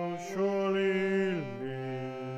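A solo voice singing the last words of a song, holding one long note and then sliding down to a lower note that it holds.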